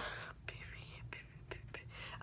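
A woman whispering faintly, breathy and without full voice, broken by a few short soft clicks.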